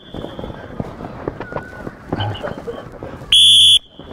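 One short blast of a coach's whistle near the end, a steady high tone about half a second long, the signal for the next child in the relay to set off running. Throughout, voices murmur and there are small knocks and scuffs from the children.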